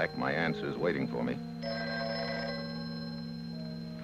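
A desk telephone's bell ringing, one ring that stops about a second and a half in, over background music of long held low notes.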